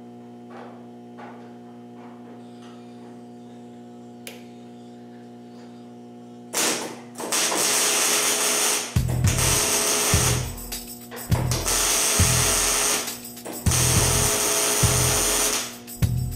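MIG welder tacking steel roll-cage tubing: a loud crackling hiss in about five bursts of one to three seconds each, starting about six and a half seconds in, with short pauses between them.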